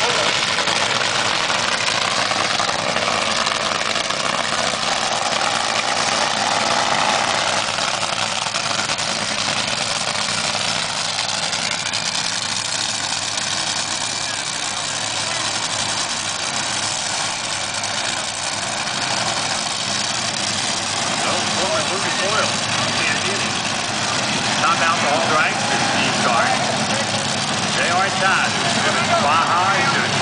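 Two Top Fuel dragsters' supercharged nitromethane V8 engines running at the starting line, a loud, steady din.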